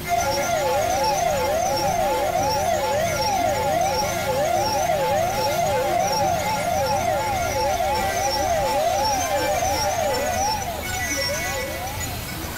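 Electronic synthesizer tone sweeping up and down like a siren, two overlapping pitches rising and falling about twice a second over a low drone. It starts suddenly and breaks off shortly before the end.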